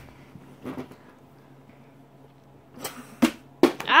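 Plastic water bottle flipped and landing in a miss: a few sharp knocks close together about three seconds in as it hits and tumbles, thrown too far to land upright.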